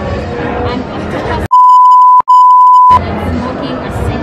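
A loud, steady, high-pitched censor bleep, a single pure tone lasting about a second and a half with a brief break in the middle, dubbed over the talk to mask spoken words; all room sound is cut out beneath it. Before and after it, women talking over background party noise.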